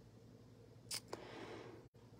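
Faint handling of small adhesive embellishment dots: one short sharp click about a second in and a smaller tick just after, as a dot is picked off its backing strip. A low steady hum sits underneath.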